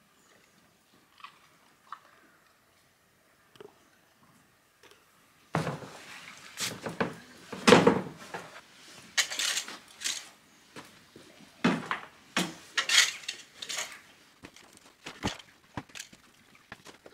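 Mucking out a horse's stable: after a few quiet seconds with faint clicks, irregular bursts of scraping and crunching begin about five seconds in, as a wheelbarrow is pushed in and a fork works through the wood-pellet bedding.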